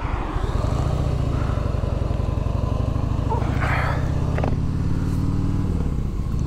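2001 Harley-Davidson Heritage Softail's Twin Cam 88B V-twin running steadily under way at an even road speed. There is a brief hiss a little past halfway.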